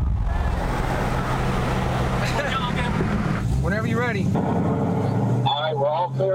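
V8 muscle car engine running hard with road and wind roar, heard from inside a car at speed. The deepest rumble eases off a little past halfway. A voice calls out briefly, and talk starts near the end.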